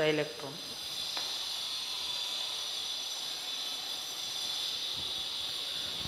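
A ballpoint pen writing on paper over a steady hiss of background noise.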